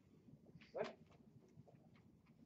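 Near silence: classroom room tone, with one brief faint sound a little under a second in.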